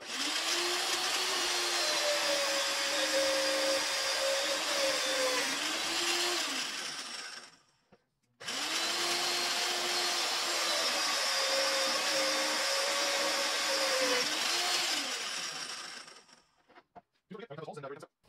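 Magnetic drill's motor running as a half-inch twist bit in a drill chuck cuts through steel plate. Two runs of about seven seconds each, the motor winding down at the end of each.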